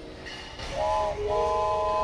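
Wooden toy train whistle blown twice, a short toot then a longer one, each a chord of several notes sounding together like a steam locomotive whistle.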